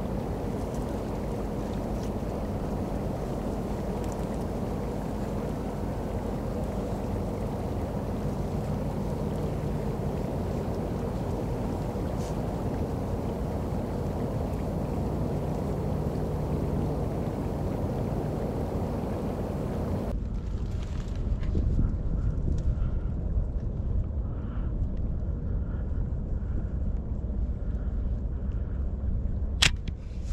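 Wind blowing across the microphone outdoors, a steady rush with a faint low hum under it. About two-thirds of the way through it changes abruptly to a deeper, louder wind rumble, and a single sharp click sounds near the end.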